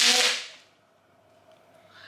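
Plastic bubble wrap popping and crackling in one sharp burst that sounds like cracking bones, dying away within about half a second.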